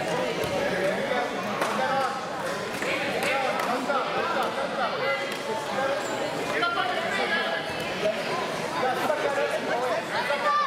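Indistinct chatter of many voices echoing in a large gymnasium, with a few short knocks.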